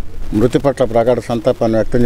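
Only speech: a man talking in short phrases with brief pauses.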